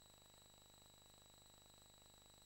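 Near silence: a faint steady hiss with a thin, high, unchanging whine.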